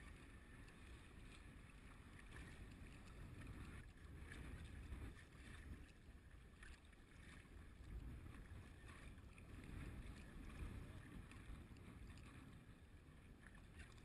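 Faint sound of a sea kayak being paddled: the paddle blades dipping and splashing at an irregular pace, over a low, swelling rumble of water and wind on the microphone.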